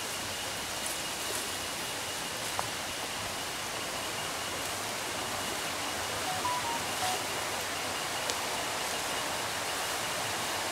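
Steady forest ambience: an even outdoor hiss with a constant thin high insect tone running through it, and a few faint short tones about six and a half seconds in.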